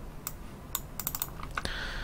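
Sharp clicks of a computer keyboard and mouse: a few separate clicks, then several in quick succession around the middle, and a brief soft hiss near the end.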